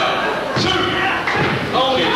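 Two dull thuds of wrestlers' bodies hitting the canvas of a wrestling ring, about half a second in and again past the middle, among shouting voices in a large hall.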